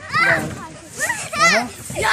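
Children at play shouting and calling out, a few short high-pitched calls.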